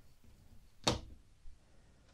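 Quiet handling of a metal conduit spear section on a cutting mat: one sharp tap about a second in, then a softer knock half a second later as it is set down.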